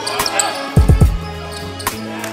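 Basketballs bouncing on a hardwood gym floor, three quick bounces just under a second in, over background music.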